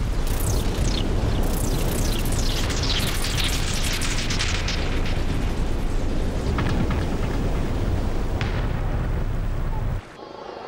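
Ocean waves breaking: a loud, continuous rush of surf over a deep rumble, with hissing sprays that slide downward in pitch, most of them in the first half.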